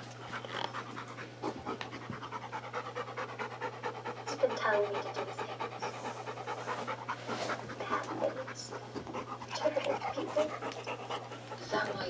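A small dog panting in quick, even breaths, with faint voices over it at times.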